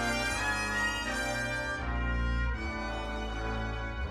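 Orchestral film score led by brass, playing sustained chords that shift every second or so.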